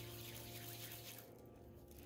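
Near silence: faint room tone with a low steady hum that stops a little past halfway.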